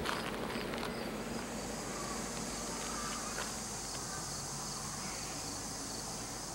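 Insects chirring: a high-pitched pulsing chirp in the first second gives way to a steady continuous buzz. A few light clicks sound in the first second.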